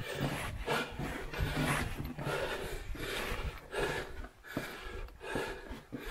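A man breathing hard in quick, repeated breaths, the effort of crawling on his knees through a low tunnel.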